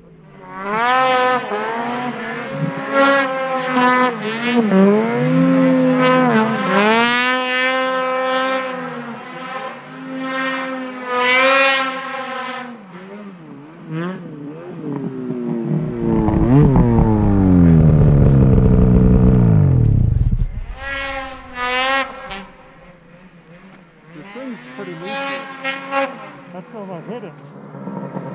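Snowmobile engines revving in repeated throttle blips. Partway through, a sled passes close by at speed, the loudest sound here, its engine pitch gliding steadily down as it goes away. More revving follows near the end.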